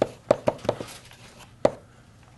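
Chalk writing on a blackboard: a quick series of sharp taps and short strokes as the chalk strikes the board, several in the first second and one more a little past halfway.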